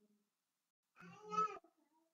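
A single short, faint vocalisation of about half a second, roughly a second in, otherwise near silence.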